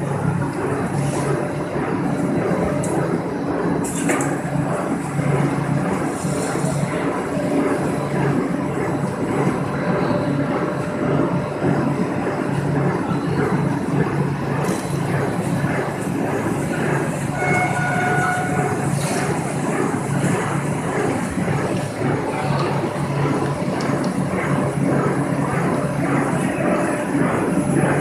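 Corrugated cardboard production line and its stacker running: a steady, dense mechanical clatter over a constant low hum.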